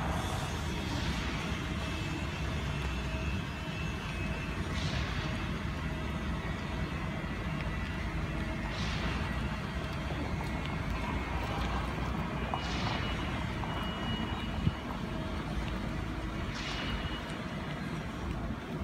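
Steady outdoor city background: a low rumble of traffic, with a soft hiss that swells about every four seconds.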